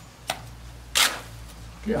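A steel trowel throwing cement mortar against a wall: a single short, sharp slap about a second in, with a light tick just before.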